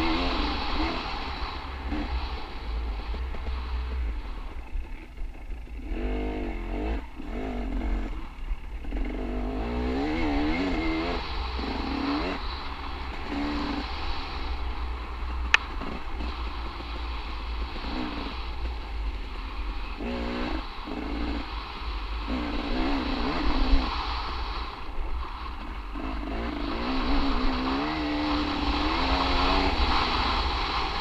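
Dirt bike engine revving up and down as it is ridden along a trail, the pitch climbing and dropping again and again, over a steady rush of wind and tyre noise. One sharp knock about halfway through.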